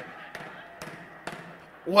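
A lull of faint background noise with three soft knocks about half a second apart. A man's voice comes in near the end.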